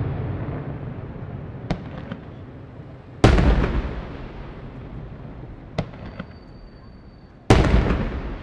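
Fireworks: two loud aerial shell bursts, about three seconds in and just before the end, each dying away in a long echo, with smaller cracks in between.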